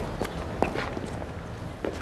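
A few footsteps on a stone-paved street, scattered and unevenly spaced, over a low steady street background.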